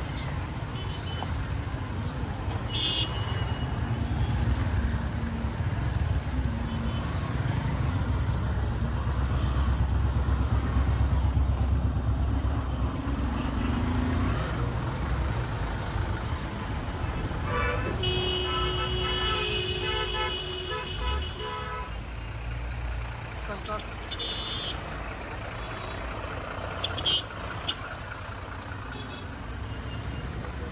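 Traffic noise from trucks and buses queued in a jam, a steady low engine rumble that grows louder in the first half. A little past halfway a vehicle horn sounds for about three seconds, partly broken into short honks.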